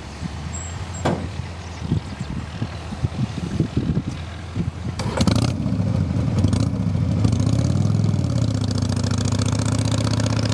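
Irregular knocks and crackles, then about halfway through a vehicle engine starts with a short burst, revs briefly up and down, and settles into a steady idle.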